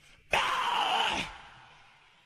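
A male metal vocalist's harsh scream from an isolated vocal track: one loud, rough cry starting about a third of a second in, lasting about a second and falling in pitch, then fading away in reverb.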